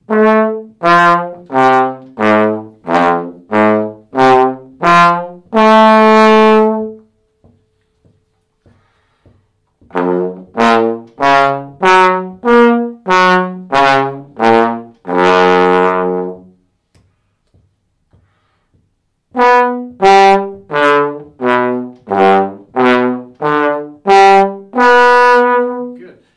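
Trombone playing three phrases of short, separately tongued notes that leap between higher and lower notes, each phrase ending on a long held note. The phrases are separated by pauses of two to three seconds, and each phrase starts a little higher than the one before.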